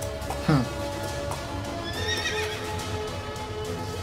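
A horse whinnying about two seconds in, over the trailer's soundtrack music.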